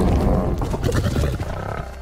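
Lions growling over a kill: a rough, low growl that is loudest early on and eases off near the end.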